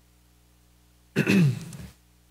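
A man clears his throat once, briefly, a little over a second in.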